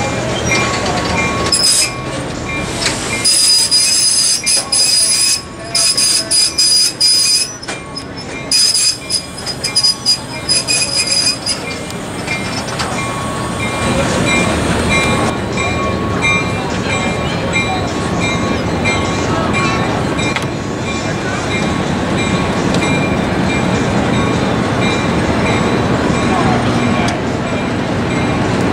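Riveted steel passenger coaches rolling past slowly, their wheels squealing in stuttering high-pitched bursts from about two seconds in to about eleven seconds, then a steady rumble of wheels on the rails.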